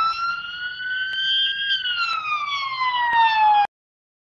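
A single siren wail. The pitch sweeps up quickly, climbs slowly for about two seconds, then falls steadily before cutting off abruptly near the end.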